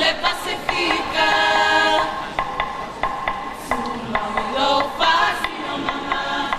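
A group sings a Samoan song in chorus. In the middle, sharp hits keep time at about three a second.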